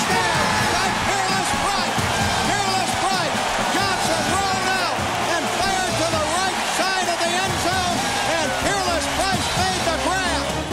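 Stadium crowd cheering and yelling after a touchdown, with music playing underneath.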